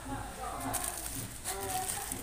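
Indistinct voices talking in a room, with a few faint clicks.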